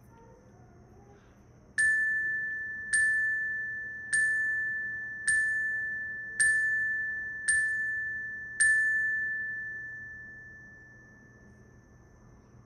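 A single-pitched chime struck seven times, about one strike a second, each note ringing on and fading; the last note rings out for a few seconds.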